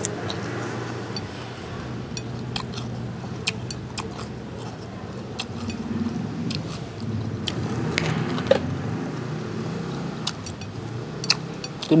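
A motor vehicle engine hums steadily in the background, with scattered light clicks of chopsticks against a plate.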